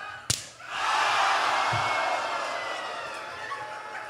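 A single sharp open-hand slap landing on a person's body, followed at once by a loud burst of crowd noise that slowly dies away.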